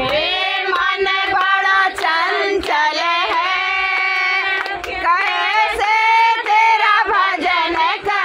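A group of women singing a Hindi devotional bhajan without instruments, in long held, sliding notes, with hand claps keeping time.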